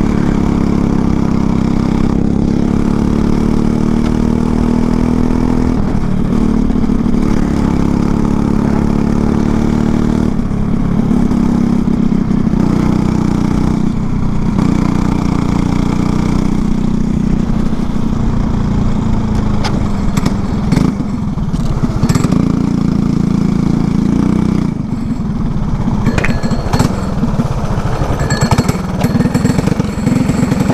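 Single-cylinder LO206 four-stroke kart engine heard from the kart, running hard and steadily with brief dips in pitch, then easing off and dropping lower about 25 seconds in as the kart slows.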